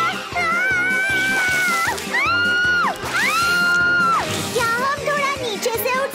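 A little girl screaming in several long, high cries that swoop up, hold and drop away, over upbeat background music with a steady beat.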